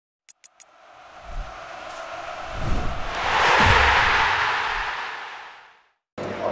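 Intro logo sting sound effect: three quick clicks, then a rush of noise with a few low thumps that swells to its loudest a little under four seconds in and fades away.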